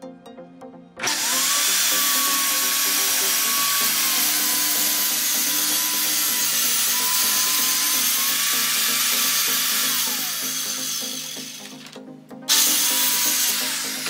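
Corded circular saw cutting through radiata pine plywood: the motor starts about a second in with a rising whine, runs through one long steady cut and spins down around ten seconds, then runs again briefly near the end and winds down. Background music plays underneath.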